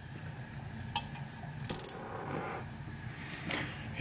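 A few light clicks and clinks, the loudest cluster about two-thirds of a second before the middle, with short soft hisses, as a small jeweler's gas torch is picked up and lit.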